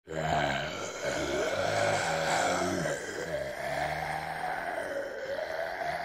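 Zombie groaning: a run of low, drawn-out, wavering groans from a human voice, starting almost at once and following one after another.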